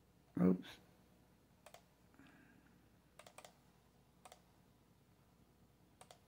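Faint computer keyboard and mouse clicks, sparse and in small groups of two or three, as a ZIP code is typed into a web form. A brief vocal sound comes about half a second in.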